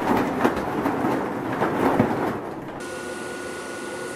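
Plastic ball-pit balls clattering and rattling as a dog moves among them, for nearly three seconds. Then a sudden change to a steady hum with a high steady whine.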